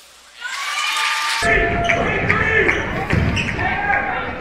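Gym sound from a basketball game: many voices from the crowd and players, with a basketball bouncing on the hardwood floor. It starts faint, and fuller, louder game sound cuts in about a second and a half in.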